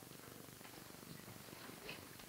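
Near silence: only the faint, steady hiss of an old television soundtrack between lines of dialogue.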